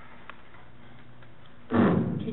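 Low steady room hum on a meeting-room microphone, then near the end a sudden loud, short burst of noise picked up close to the microphone.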